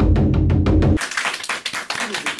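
A large taiko drum struck with wooden bachi sticks in a fast roll of heavy, booming strokes, about eight a second. The roll stops abruptly about a second in, and lighter sharp claps or taps follow.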